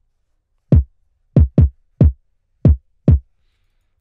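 A soloed trap kick drum sample playing six hits in an uneven, syncopated pattern, each a short deep hit that drops in pitch. It runs through Soundtoys Decapitator distortion on the EMI setting, drive 7 at 50% mix, which gives it grit and makes it louder without clipping. It is EQ'd with the lows cut around 50 Hz and the highs around 1 kHz.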